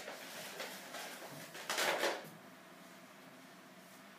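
A polystyrene foam shipping box being opened: the foam lid pulled off and handled, with a short rough scraping rustle about two seconds in and lighter handling noises before it.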